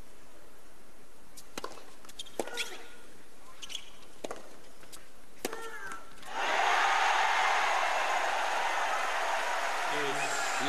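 Tennis rally: several sharp racket-on-ball hits, roughly a second apart, over a quiet stadium crowd. About six seconds in, the crowd breaks into applause as the point ends.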